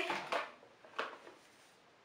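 A single light click about a second in as a cardboard gift box is handled, after the tail end of a spoken word.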